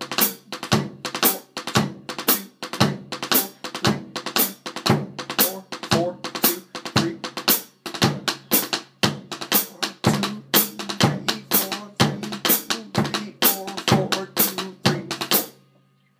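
Drumsticks playing the single drag rudiment on a rubber practice pad set on a snare drum: quick grace-note drags leading into accented strokes, in a steady repeating pattern. The playing stops just before the end.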